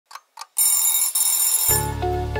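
Two quick clock ticks, then a bright, high alarm-clock bell ringing for about a second with a brief break in the middle, from an intro sound effect. Music with a bass line and melody comes in near the end.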